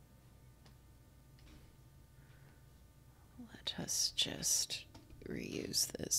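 A woman whispering and mumbling to herself, starting a little past halfway through, after about three seconds of quiet with a few faint clicks.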